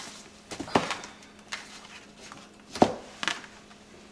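Unwrapping and handling a paper gift box: a few short rustles and taps of paper and cardboard, the loudest a little under three seconds in.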